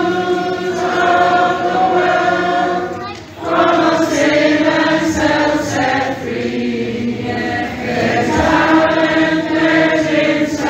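A group of girls and young children singing together as a choir in held, sustained phrases, with a brief break for breath about three seconds in.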